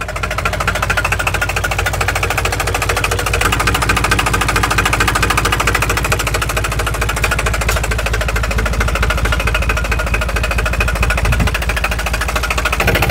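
Yanmar 4T90 diesel engine running steadily with an even, fast beat, sounding like a new engine.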